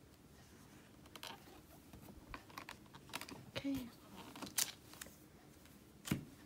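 Irregular light clicks, taps and rustles of card-making supplies (paper, rubber stamps and tools) being handled on a craft desk, loudest a little past halfway.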